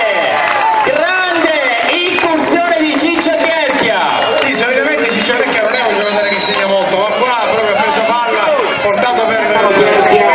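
Crowd of spectators shouting and cheering, many voices overlapping in a loud, continuous din: the cheer for a goal being celebrated.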